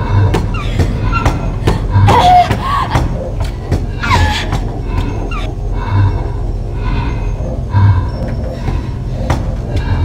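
Horror-film sound score: a deep thud about every two seconds under sharp clicks, with a strained voice crying out around two and four seconds in.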